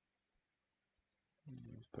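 Near silence with a couple of faint mouse clicks as a menu is opened, then a man starts talking near the end.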